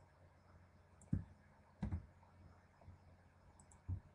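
Quiet room with three short, soft thumps, about a second in, near two seconds and at the very end, and a few faint clicks in between, from a computer mouse and desk being handled.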